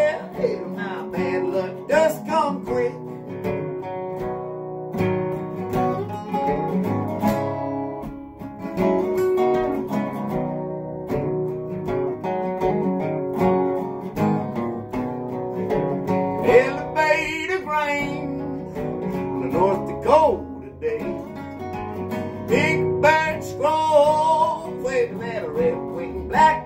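An acoustic guitar and a resonator guitar playing together in a folk-bluegrass song, picked and strummed, with notes bending in pitch in the second half.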